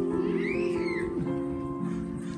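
Piano accompaniment holding soft sustained chords, as the tail of a held sung note fades out just after the start. A brief high call that rises and falls sounds over it about half a second in.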